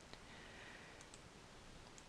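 Near silence: room tone with a few faint clicks.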